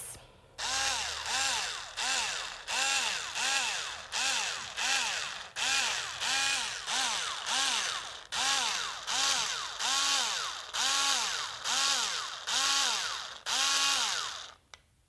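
Green cordless drill twisting a strip of fox fur held in a clip on its chuck, run in short repeated bursts about three every two seconds, the motor's whine rising and falling with each burst.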